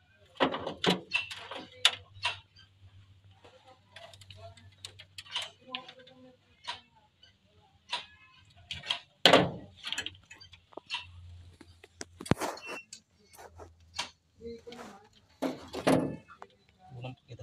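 Handling noise from hand work on a vehicle's electrical wiring: wires, small tools and parts clicking and tapping at irregular intervals, loudest about nine seconds in, over a faint low hum.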